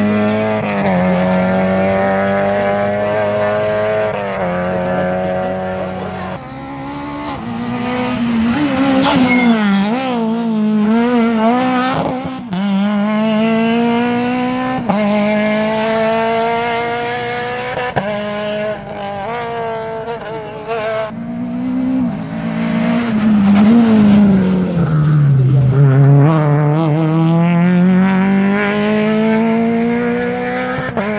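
Rally car engines at hard throttle on a special stage, with one car after another. Their pitch climbs in repeated sweeps that drop back at each gear change. Late on, one engine's pitch falls as the car slows and changes down, then climbs again.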